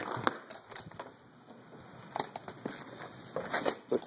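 Clicks and knocks of a glass-paned French door being unlatched and opened, the loudest near the start, then a few fainter scattered knocks as someone steps out onto a wooden deck.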